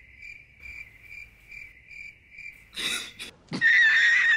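Cricket-chirp sound effect: a steady high chirp repeating about two to three times a second, used as the gag for an awkward silence. It cuts off about three seconds in with a sudden loud burst, and near the end a man's loud, high cackling laugh begins.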